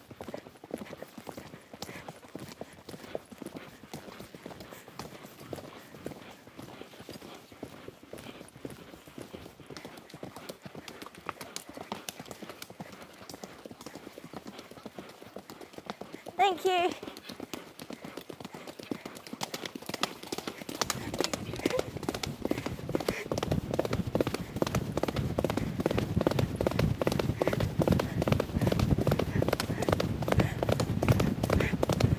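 Horse's hooves striking a wet gravel track, heard from the saddle, in a steady clip-clop. About halfway through there is a brief wavering vocal sound, and from about two-thirds in the hoofbeats come louder and quicker with more rushing low noise as the horse picks up speed.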